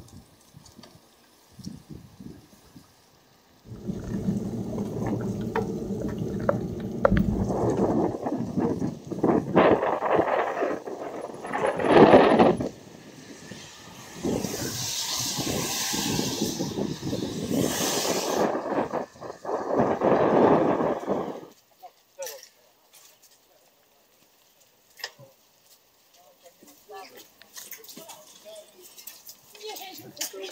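Wind rumbling and buffeting on the microphone of a camera riding on a moving bicycle, with indistinct voices mixed in. It drops away abruptly about two-thirds of the way through, leaving only faint scattered clicks.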